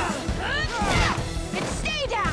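Staged fight-scene sound effects, with punch and kick impacts landing sharply about one second in and again near the end, over driving background action music.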